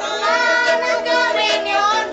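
A group of children singing a Christmas carol together, accompanied by homemade wooden guitars.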